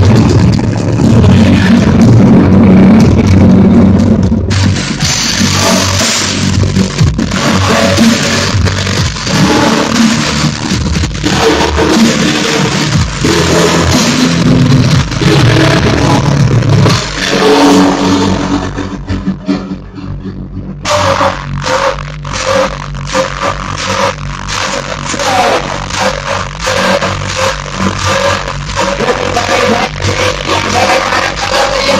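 Hardcore techno played very loud over a club sound system and heard from inside the crowd, dense and distorted. About two-thirds of the way in the bass drops out briefly in a breakdown, and then the pounding kick-drum beat comes back.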